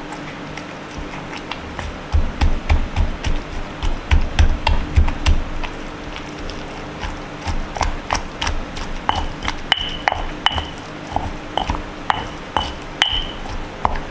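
Stone pestle pounding and grinding wet sambal of fried chilies, tomato, shrimp paste and palm sugar in a heavy stone mortar. It starts as a run of dull thuds, about four a second, then turns to sharper clicks of stone on stone, some with a short high ring.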